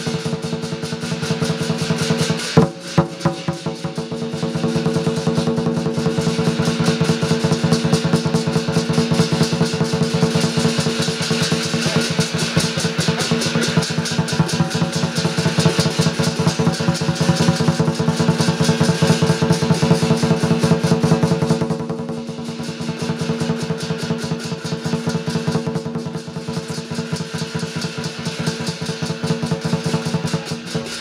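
Lion-dance percussion: a drum beaten fast and continuously with clashing cymbals and a ringing gong, accompanying the lions during the cai qing (plucking the greens). A couple of heavy accented strokes come a few seconds in, and the playing eases off in level about three-quarters of the way through before picking up again.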